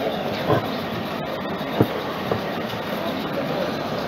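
Steady background noise of a lecture room during a pause, with two short knocks, about half a second and just under two seconds in.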